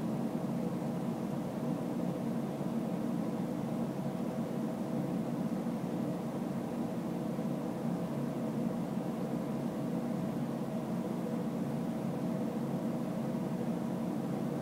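Steady background hum and hiss of a room, even throughout, with no Geiger clicks to be heard.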